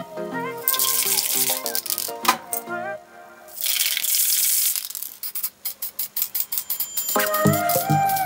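Aerosol spray-paint can hissing in two bursts, the first about a second and a half long and the second about a second long, then the can's mixing ball rattling in quick shakes, about five a second, over background music.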